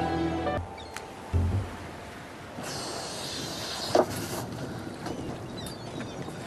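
Background music that stops about half a second in, then the ambience of open water around a motor yacht lying still with its engine dead, with a low thump a little over a second in and a rush of hissing water through the middle.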